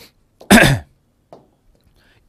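A man coughs once, a short harsh burst about half a second in.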